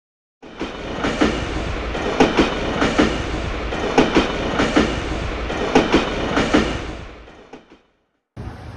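Train wheels running over rail joints: a steady rumble with sharp clicks coming in close pairs, the classic clickety-clack. It starts about half a second in and fades out near the end.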